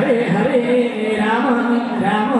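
Voices singing a devotional bhajan in long held notes that slide in pitch, with small hand cymbals and drums played along.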